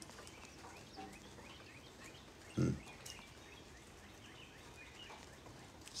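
A near-quiet pause broken by a man's brief 'hmm' about two and a half seconds in, with faint, scattered high chirps in the background.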